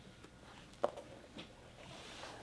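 Mostly quiet room with faint scattered handling noises and one short knock a little under a second in.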